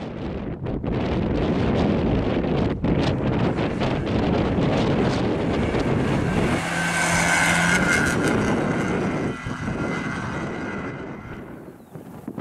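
Škoda Fabia hatchback's engine revving hard on a slalom run, with brief dips as the throttle is lifted. A high tyre squeal lasts a second or two as the car turns past close by, and the engine fades as the car pulls away near the end.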